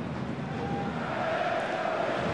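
Football stadium crowd noise: a steady hum from the stands, with faint chanting that grows slightly louder toward the end.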